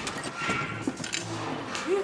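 An old household refrigerator breaking down: its motor gives a low hum that starts and stops with knocking, the sign of the motor failing for good.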